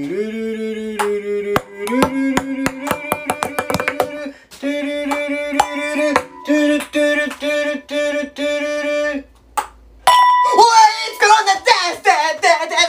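A voice holds long sung notes, each lasting a second or two and stepping in pitch, over quick clicks from ping pong balls bouncing on a hard surface; the clicks speed up in runs. About ten seconds in come loud shouts and cheering as the balls land in the glasses.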